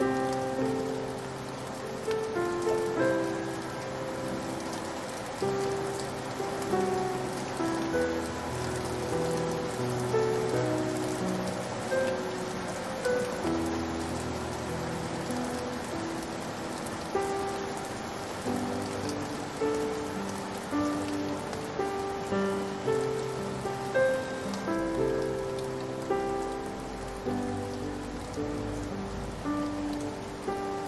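Slow solo piano playing a gentle, sad melody of single notes and low held chords, over a steady bed of recorded rain falling on a surface.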